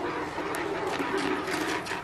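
Rinse water sloshing and splashing inside a plastic bucket: a steady rushing with a few sharper splashes.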